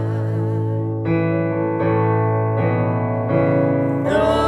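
Electric keyboard playing sustained piano chords of a slow gospel song, the chord changing about once a second. A woman's held sung note with vibrato trails off in the first second.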